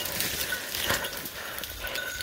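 Footsteps pushing through dense brush and leaf litter, with leaves and twigs rustling and brushing past in uneven crunches.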